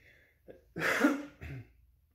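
A man clears his throat once, a short rough burst about a second in with a brief smaller tail after it.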